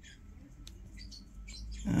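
A few faint, short clicks from the buttons of a Flipper Zero being pressed, in an otherwise quiet room; a man's voice starts right at the end.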